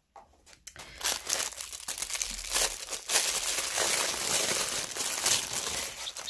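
Clear cellophane wrapping crinkling as it is handled by hand, starting about a second in and running on as dense crackling.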